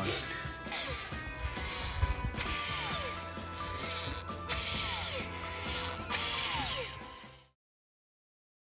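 Cordless electric caulking gun running in four short bursts of about a second each, pushing MS polymer sealant out of a cartridge. The motor's pitch falls away each time it stops. The sound fades out near the end.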